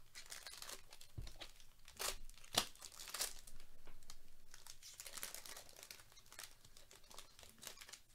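Foil-plastic wrapper of a trading card pack crinkling and tearing as it is ripped open, with one sharp crack about two and a half seconds in and dense crackling for a couple of seconds after.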